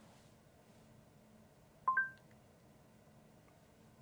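A short two-note electronic chime, the second note higher, from the Polestar 2's Google Assistant about two seconds in, as it takes the spoken question about remaining range. Otherwise near silence in the quiet cabin.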